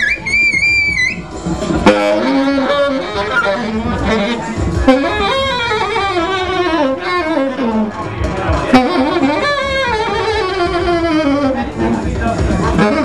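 Saxophone improvising freely, its pitch sliding and bending in repeated falling glides, over other pitched sounds that overlap it.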